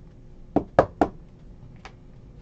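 Sharp knocks from trading cards being handled against a tabletop: three quick taps about half a second in, then a fainter one near the end.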